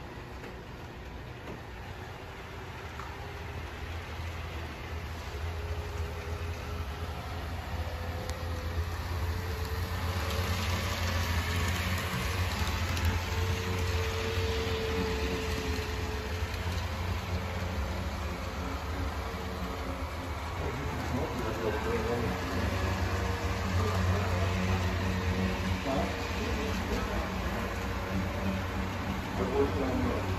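HO scale model diesel locomotive pulling loaded coal hopper cars along the layout track: a low motor hum with the rolling rattle of wheels on the rails, growing louder about ten seconds in as the train comes closer.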